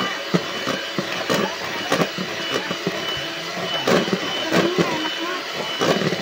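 Electric hand mixer running steadily, its wire beaters whipping a thin ice-cream batter in a plastic bowl, with irregular sharp clicks as the beaters knock against the bowl.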